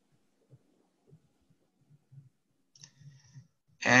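Near silence on a video-call line, with a few faint soft clicks and low murmurs. A man starts speaking just before the end.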